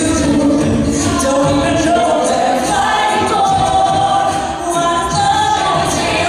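Co-ed a cappella group singing a pop arrangement with voices only: a female lead over held backing harmonies from the rest of the group.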